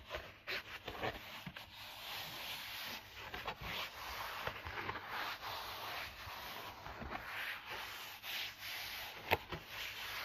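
Stiff cardboard packaging insert being rubbed and handled by hand: a steady run of scratchy rubbing strokes with small clicks, and one sharper click near the end.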